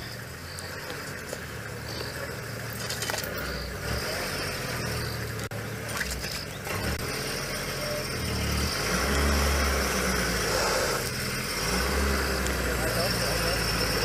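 Safari game-drive vehicle's engine running at low speed, growing louder partway through as the vehicle is eased into a viewing position.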